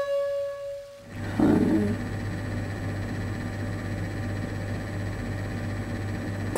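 A held flute note of background music fades out about a second in. Then a steady low hum remains, with a brief noise just after the change.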